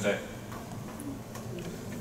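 Meeting-room tone during a pause in speech, with a faint click about a second in.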